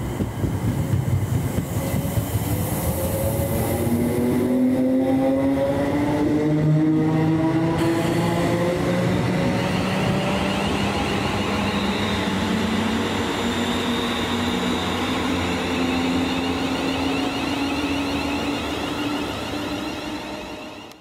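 A ScotRail electric multiple unit train running past along the platform, with a steady rumble of wheels on rail. Its traction motors whine in a pitch that climbs slowly over many seconds as the train gathers speed.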